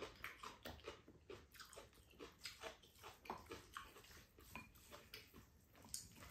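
Quiet close-up eating sounds from two people eating bibimbap: soft chewing and small mouth clicks, with spoons scraping and tapping ceramic bowls. The clicks come irregularly, several a second.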